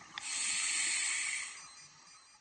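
A scuba diver's regulator hissing as a breath of air is drawn through it underwater, lasting just over a second and fading out near the end.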